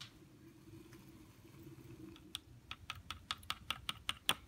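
A quick run of light, sharp clicks, several a second, starting a little past halfway after a quiet stretch.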